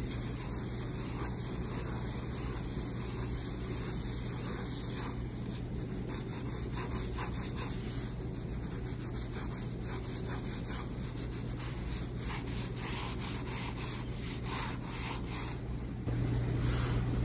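Mechanical pencil lead dragged across paper in quick, repeated sketching strokes, mostly with the side of the lead, giving a dry scratching rub. The strokes come thicker and faster from about six seconds in.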